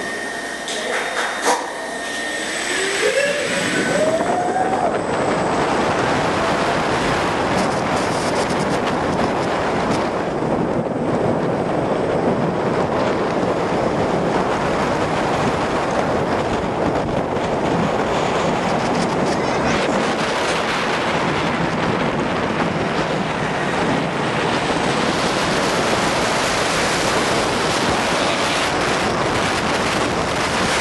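Roller coaster train running at speed on its track, heard from the front seat: the wheels rumble and the air rushes past the microphone. The noise swells about three seconds in as the train leaves the tunnel and picks up speed, then stays loud and steady.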